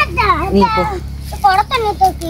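Small children's voices: a young child talking or calling out in short, high-pitched phrases.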